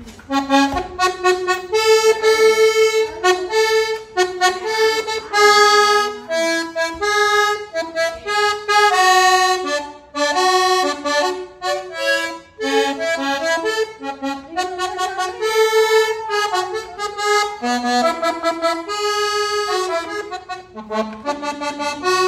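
Diatonic button accordion playing a lively vallenato melody over chords, one note quickly after another with only brief breaks.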